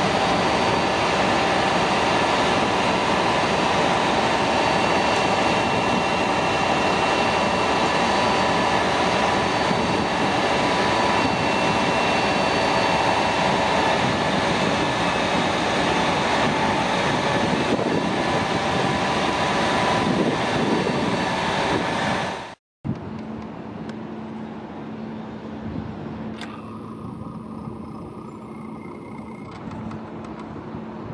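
Crane truck engine running loudly and steadily while the crane lowers a steel lattice tower section, with several steady high tones over the engine noise. It cuts off abruptly about three quarters of the way through, and a much quieter steady street hum follows.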